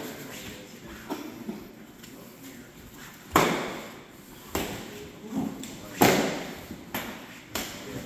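Padded arnis sparring sticks striking during double-stick sparring: two loud cracks about three and a half and six seconds in, with lighter hits between, each echoing in a large hall.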